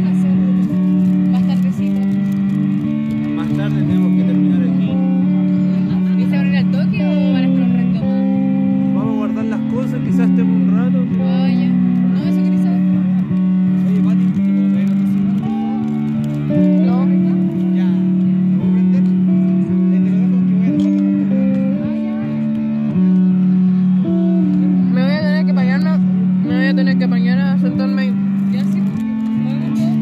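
Live hardcore punk band playing electric guitars and bass: loud sustained low notes that change every second or two, with wavering, bent higher guitar lines that grow busier near the end.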